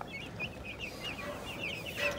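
A brooder of about a hundred young meat-bird (broiler) chicks peeping steadily, many short high chirps overlapping.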